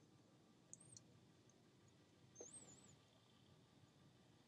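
Near silence, broken only by two faint high-pitched chirps: a short one under a second in and a longer wavering one about two and a half seconds in.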